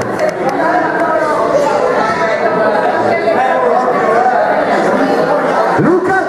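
Many voices talking at once in a large, reverberant hall: steady crowd chatter.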